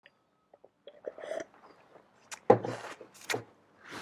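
A person sipping and swallowing from a mug, with faint small mouth clicks early and a few short, sharp sips or knocks in the second half.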